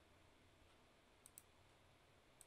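Near silence over a video call, with two faint, very short high clicks a little past the middle.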